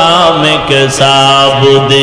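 A man's voice chanting a Bengali sermon in a drawn-out, sung tone, holding long notes and bending slowly between pitches, loud and close on a microphone.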